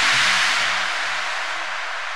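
Background electronic music: a wash of hissing noise, like a crash cymbal or white-noise sweep, fading away after a heavy hit, with quiet short synth notes underneath.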